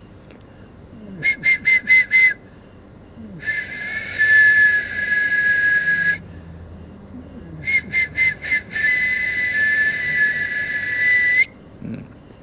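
A whistle blown in a pattern: five short blasts, then one long blast of about three seconds, and then the same again. Each blast sounds two steady pitches at once.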